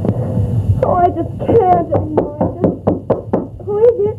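A man grunting and groaning in a rapid series of short, pitch-bending vocal sounds that quicken toward the end, mimicking someone straining hard on the toilet.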